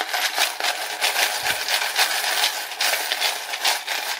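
Loose coins rattling and clinking continuously in a stacked plastic coin sorter tray as it is shaken back and forth, the coins dropping through the sized holes to separate quarters, nickels, dimes and pennies into the trays below.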